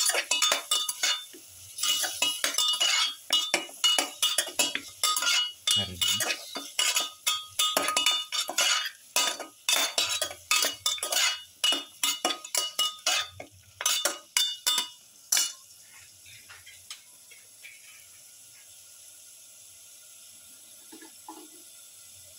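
A perforated steel spatula scraping and clinking against a metal pot as chunks of lamb in thick gravy are stirred, in quick irregular strokes. The stirring stops about fifteen seconds in, leaving a faint sizzle from the pot.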